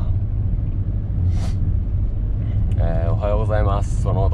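Steady low rumble of a Honda N-VAN kei van on the move, its small three-cylinder engine and tyre noise heard from inside the cabin. A short hiss comes about a second and a half in.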